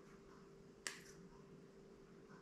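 Near silence of a quiet room, broken by one sharp click a little under a second in, with a fainter tick just after it.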